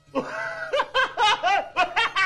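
Hearty male laughter breaking out suddenly just after the start, going into rapid, loud ha-ha pulses about five a second.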